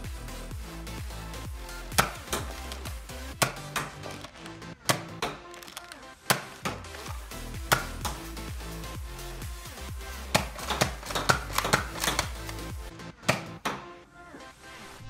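Background electronic music with a steady beat, over a series of sharp plastic snaps and clicks, irregularly spaced, from a Nerf Zombie Strike Hammershot being primed and fired.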